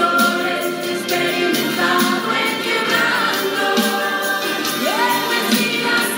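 Music: a choir singing gospel music.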